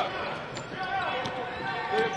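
A basketball being dribbled on a hardwood court, a few sharp bounces over the murmur of arena voices.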